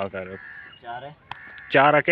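A man speaking, with a pause in the middle where a short, faint call is heard. A single click comes just before he resumes.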